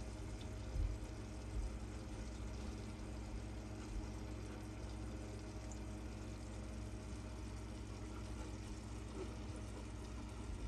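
Steady low hum of a saltwater reef aquarium's pumps with water circulating, and a few faint low knocks in the first few seconds.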